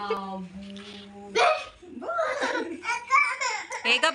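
A baby laughing in short rapid bursts while being played with, after a held vocal sound at the start.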